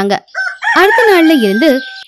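A single drawn-out crowing call of about a second, wavering and falling in pitch toward its end, with a thin steady high tone held after it.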